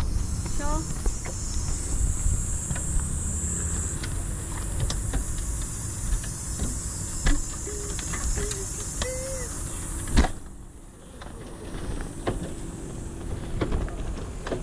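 Wind buffeting the microphone over the low rumble of a city bike rolling on rough asphalt, with scattered clicks and rattles from the bike. A sharp knock comes about ten seconds in, after which the rumble drops off for a couple of seconds.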